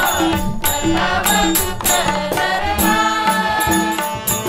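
Marathi devotional bhajan music: tabla drumming with low bass-drum notes under held melodic tones, punctuated by sharp strikes about every half second to second.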